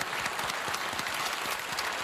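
Applause: many hands clapping at a steady level.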